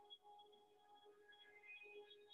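Faint, soft ambient music: a few sustained tones that shift gently between pitches.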